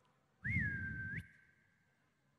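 A man whistling once, a short call of under a second: the note lifts, holds steady, then shoots sharply upward at the end. It imitates a farmer's whistled signal to make a team of oxen stop the cart.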